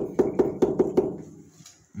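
Quick knocking on a kitchen countertop, about seven hard knocks in the first second, then stopping.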